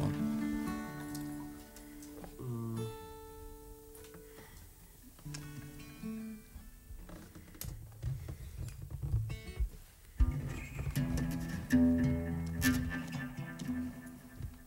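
Acoustic guitar and harp guitar played softly and sparsely, single plucked notes and chords left to ring out. One note bends in pitch about two and a half seconds in, and the playing grows busier after about ten seconds, the kind of noodling and tuning done between songs.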